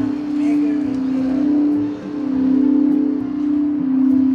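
Crystal singing bowl sounding one long, steady tone with a slow wavering pulse. The tone dips briefly about halfway, then swells again, and a fainter higher tone rings above it.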